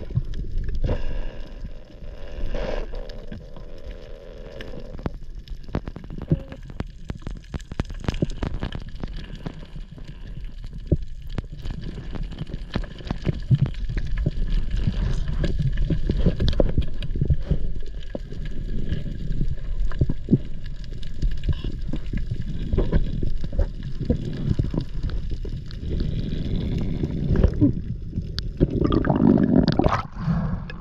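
Muffled underwater sound heard through a head-mounted GoPro on a freedive: a continuous low water rumble with many scattered short clicks. Near the end, a louder gush as the diver breaks the surface.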